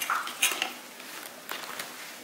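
A page of a spiral-bound book being turned, the paper rustling and clicking against the wire coil binding in several short clicks and scrapes.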